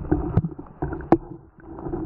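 Muffled water sloshing and scattered sharp knocks picked up by a camera held underwater, the loudest knock a little past the middle and a brief lull soon after.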